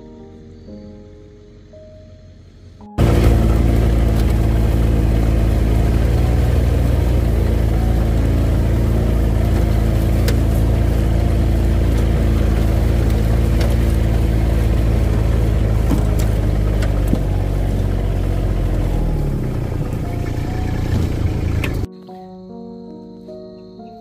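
Soft music for the first few seconds, then a sudden cut to a loud engine running steadily at one speed. Its pitch sags slightly near the end, and it cuts off abruptly.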